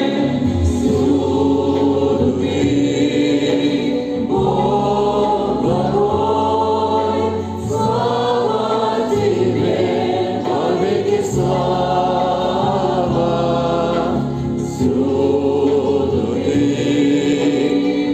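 A congregation singing a hymn together in Russian, in long held phrases over a low accompaniment.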